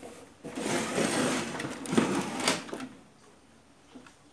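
Handling noise on a hi-fi unit's metal cabinet: rubbing and scraping for about two seconds, with two sharp clicks near the end of it.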